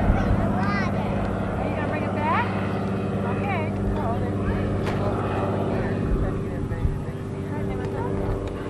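Faint voices of children calling and shouting on and near the water, short high rising-and-falling calls, over a steady low hum.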